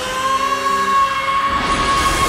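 An animated character's long, held scream at one high pitch, rising into it at the start, with a rushing whoosh building under it near the end.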